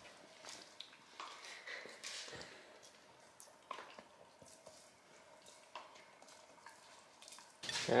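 Two Siberian huskies gnawing and licking raw meaty rib bones: faint, wet chewing with scattered short clicks.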